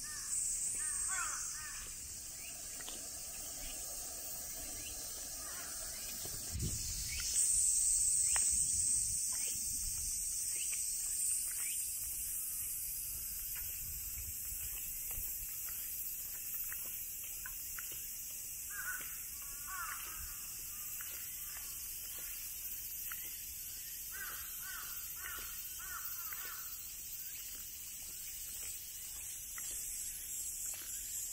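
Crows cawing in several short series over a steady, high-pitched chorus of summer cicadas. The cicadas grow louder for a few seconds about a quarter of the way through.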